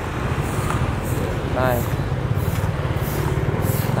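Motorbike engine running steadily at low speed, a low fluttering hum, as the rider turns off the street onto fresh asphalt.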